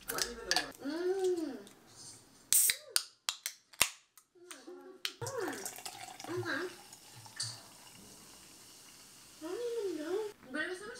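Soda poured from a can into a glass over mochi ice cream, fizzing, in the second half. Before it there are a few sharp clicks about halfway through, and a woman makes wordless vocal sounds.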